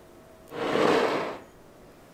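Spatula stirring ricotta into a runny egg, oil and milk mixture in a glass bowl: one wet swish starting about half a second in and lasting under a second.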